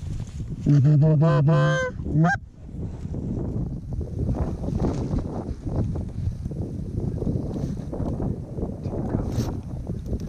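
Canada goose honking: one loud, close, low honk that breaks upward at the end, about a second in, then a quick run of honks and clucks that carries on to the end.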